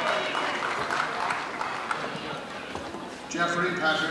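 Audience applause and crowd noise, then a man's voice starts reading out over it a little over three seconds in.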